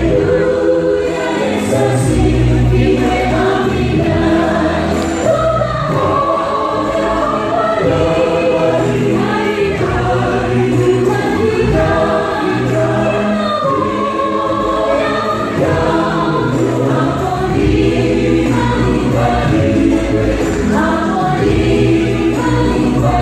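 A gospel choir singing in several voices over a steady instrumental backing with a low bass line.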